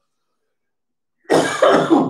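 A man coughing, starting about a second and a quarter in after a silent pause.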